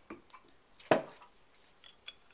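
Quiet handling of a Zippo lighter insert and a can of lighter fluid while the wick is wetted: a few faint ticks, then one sharp click a little under a second in.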